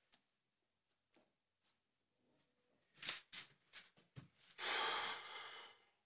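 A man breathing hard through the nose and mouth. First come several short, sharp sniffs, then a dull thump, then one long forceful exhale of about a second that fades away.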